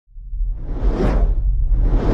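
Cinematic intro sound effect: a deep low rumble with a whoosh that swells and fades about a second in, and a second whoosh starting to build near the end.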